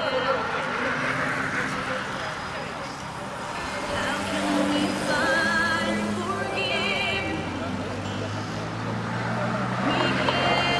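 Roadside ambience with a public-address loudspeaker carrying voice and music in the distance, over a steady low vehicle engine that grows a little louder near the end.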